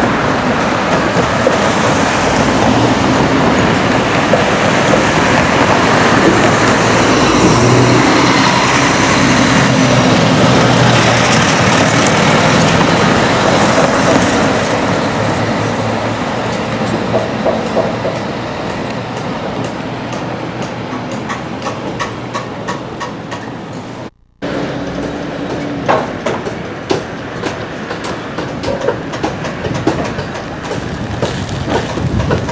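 Building-site noise: a steady, loud rush that eases after about fifteen seconds, followed by irregular sharp knocks of hammering on timber framing. The sound cuts out for a moment near the end.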